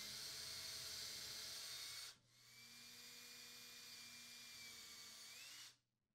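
Cordless drill with a 1/8-inch bit drilling pilot holes for the mounting screws through the oven frame into the cabinet, in two short runs: about two seconds, a brief stop, then about three seconds more, its pitch rising just before it stops. Faint.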